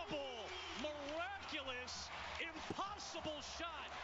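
Quiet speech from the game broadcast, with crowd noise behind it.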